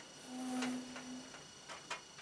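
A man's short closed-mouth hum at one steady pitch, held for about a second, followed by a few faint clicks or taps.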